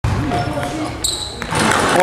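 Basketball game sounds on a wooden gym floor: the ball thudding, and a brief high sneaker squeak about a second in, with players' voices in the hall.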